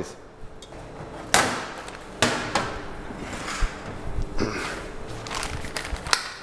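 Metal kitchenware being handled and set down on a stainless steel worktop: a steel mixing bowl and metal baking trays knocking and clattering, with two sharp knocks standing out early on and a few lighter ones after.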